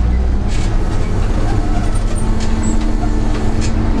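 Bizon combine harvester running steadily while cutting and threshing a heavy rye crop, heard from inside the cab as a loud, even mechanical drone; a steady hum comes in about a second in.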